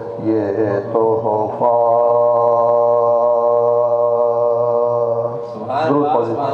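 Men's voices chanting a Shia soz/marsiya recitation: a short melodic phrase, then one long steady held note for about four seconds, breaking off into a new phrase near the end.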